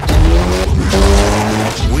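Hyundai Elantra N's 2.0-litre turbocharged four-cylinder revving hard under acceleration. Its pitch climbs, breaks off briefly about two-thirds of a second in as it shifts up, then climbs again until a second shift near the end.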